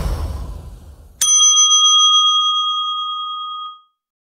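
A rushing noise fades out over the first second. Then, about a second in, a single bright bell ding strikes and rings steadily for about two and a half seconds before it cuts off.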